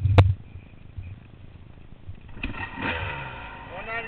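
A sharp knock right at the start, then a dirt bike engine running and revving from about halfway through.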